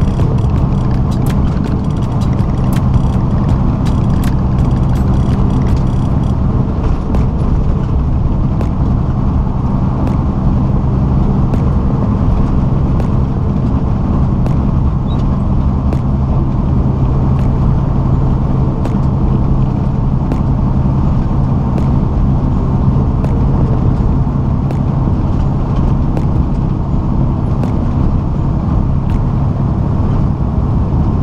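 Semi truck's diesel engine and tyres droning steadily at highway cruising speed, heard from inside the cab, with a few faint clicks in the first few seconds.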